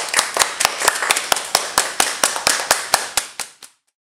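A small group clapping hands in a steady rhythm, about four to five claps a second. The clapping fades and stops just before the end.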